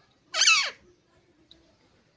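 A parakeet gives one loud, harsh squawk that falls in pitch, about a third of a second in.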